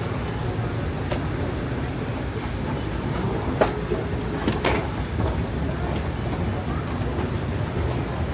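Steady low rumble of a busy indoor concourse with faint voices, and two sharp clacks about three and a half and four and a half seconds in.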